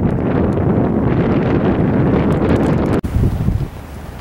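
Wind buffeting the camera's microphone, a loud, steady rumble that drops abruptly to a quieter wind about three seconds in.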